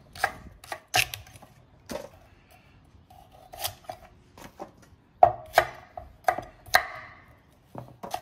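Chef's knife chopping leek and then carrots on an end-grain wooden cutting board: irregular sharp knocks of the blade striking the wood, about one to two a second. The knocks come loudest and closest together in the second half.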